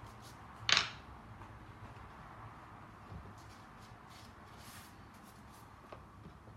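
Quiet handling sounds of sugarcraft tools and a flower-paste leaf on a foam board and work surface, with one short, sharp noise about a second in.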